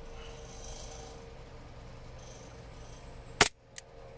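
A WE Hi-Capa 5.1 gas blowback airsoft pistol fires a single shot through a chronograph near the end, one sharp loud crack, with a much fainter click a third of a second after. The shot, a 0.20 g BB, clocks about 349 fps. Before it there is only light handling rustle.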